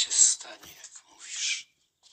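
A voice whispering two short, breathy phrases, stopping about one and a half seconds in.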